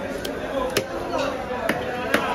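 Large knife scraping scales off a big rohu fish on a wooden log block, the strokes giving three sharp knocks, the last two loudest.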